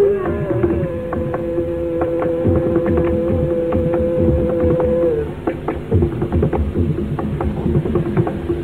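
Carnatic concert music with mridangam accompaniment. A melody holds one long steady note for about five seconds over a lower sustained tone, while the drum strokes go on throughout and keep going after the note ends.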